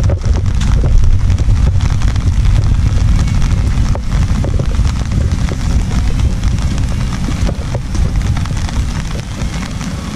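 Wind noise on the microphone, a steady low rumble, with rain pattering on an umbrella held over the camera.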